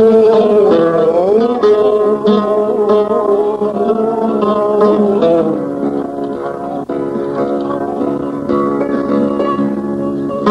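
Algerian chaâbi music: an instrumental passage led by plucked string instruments, with some notes sliding in pitch.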